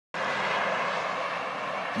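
Road traffic on a highway: the steady tyre and engine noise of passing vehicles, easing off slightly toward the end.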